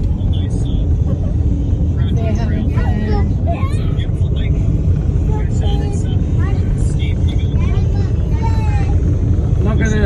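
Steady low rumble of a moving car, heard from inside the cabin, with people talking over it.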